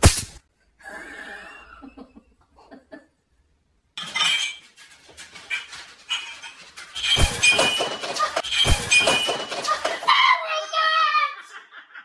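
A short, sharp electric crack from a handheld shock stick at the start. Then a man yelling and crying out in shock, with crockery clattering and two heavy thuds.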